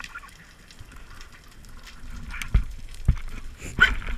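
Underwater sound picked up by a diver's camera: fine crackling clicks throughout, with several low thumps from about halfway in.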